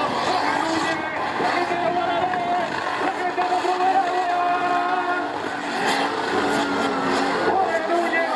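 An off-road 4x4's engine revving hard under load as it drives through mud, its pitch rising and falling, with people's voices mixed in.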